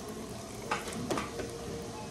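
Crunching and chewing on a crispy fried chicken drumstick, with a few sharp crunches around the middle.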